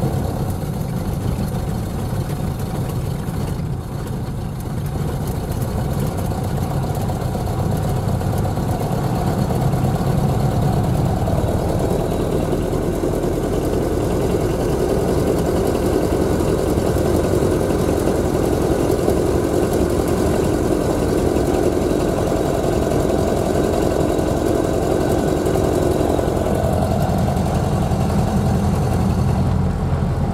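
Ford Model A four-cylinder flathead engine heard from inside the cabin while the car drives along, with road noise. The engine note grows louder and higher from about a third of the way in and eases back near the end. By the owner's account the engine runs poorly, with only two or three of its four cylinders firing and the rest missing spark.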